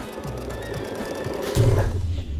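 Home sewing machine running fast during free-motion quilting, its needle stroking in a rapid, even rhythm over background music. A loud low thump comes about one and a half seconds in.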